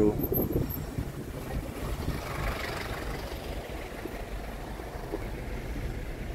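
Car driving in slow traffic, heard from inside the vehicle: a steady low rumble of engine and road noise, with a slight swell of noise about two to three seconds in.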